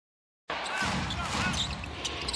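Silence, then about half a second in the sound of a live basketball game cuts in: a basketball being dribbled on the hardwood court over steady arena crowd noise.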